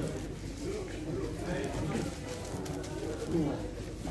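Rapid plastic clicking and clatter of a 7x7x7 speedcube being turned, over background voices.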